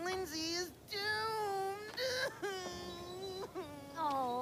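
A cartoon character's voice wailing in distress, three long drawn-out cries that bend up and down, the last held steadily for over a second.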